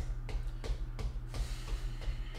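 Bare feet marching in place on a floor: short, even footfalls about three a second, over a steady low background hum.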